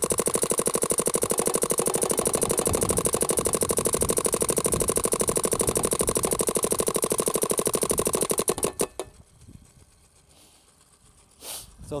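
Planet Eclipse Geo 4 compressed-air paintball marker firing in ramping mode: a rapid, even stream of shots that stops suddenly about nine seconds in.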